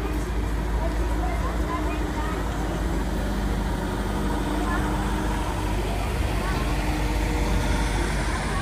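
Engine of a tourist road train, a small mock locomotive pulling open carriages, running steadily as it drives slowly past close by, growing a little louder toward the end, with people's voices around it.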